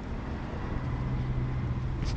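Steady low rumble of road traffic, with a low engine hum joining under it a little under a second in.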